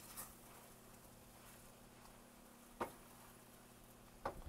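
Near silence, broken about three seconds in by one short knock of a wooden spoon against a stainless steel sauté pan of pasta being stirred.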